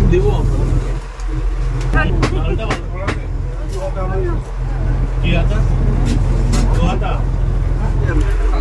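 A boat's engine runs with a steady low drone beneath people talking, with a few sharp clicks.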